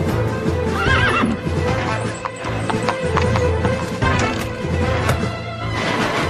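Horses' hooves clip-clopping as a troop of cavalry horses moves off, with a horse whinnying about a second in. Background music plays underneath.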